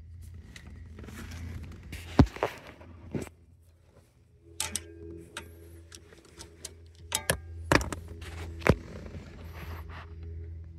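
Scattered sharp clicks and knocks of hand tools and plastic parts on a car's steering column while the clock spring's retaining clip is pried loose, the loudest about two seconds in and again near the end, over a low steady hum.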